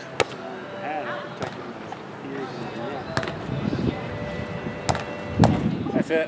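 Volleyball being hit during a sand-court rally: a sharp smack of the serve just after the start, then about four more slaps of hand and forearm on the ball over the next few seconds, the loudest near the end. Onlookers' voices murmur underneath.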